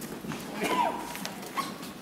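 Footsteps, shuffling and light knocks of people moving about, with a short high squeak about two-thirds of a second in.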